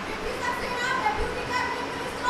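A group of schoolgirls reciting an oath in chorus, many young voices speaking together in unison in a large hall.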